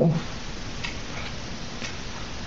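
Steady background hiss with a few faint ticks, about one a second.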